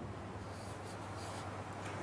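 Felt-tip marker drawing on a whiteboard: faint short strokes and squeaks over a steady low hum.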